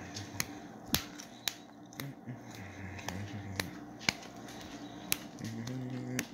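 A run of sharp, irregular clicks, roughly one or two a second, over a low, wavering hum.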